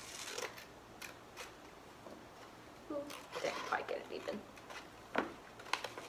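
Scissors snipping a slit into folded paper, a few short cuts and clicks with paper rustling.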